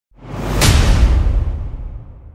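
Whoosh sound effect with a deep low boom, swelling up quickly to a peak about half a second in and then fading away.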